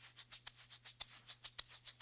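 Two egg shakers held together in one hand, shaken back and forth horizontally in a steady, even rhythm of about seven to eight strokes a second.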